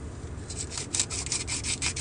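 Scratchy rasping from a small herb grinder being twisted by hand: a quick run of rubbing strokes starting about half a second in.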